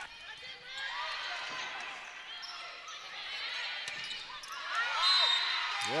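A volleyball rally: the ball being struck and hitting the court, under many overlapping voices of players and spectators calling out, which grow louder about five seconds in.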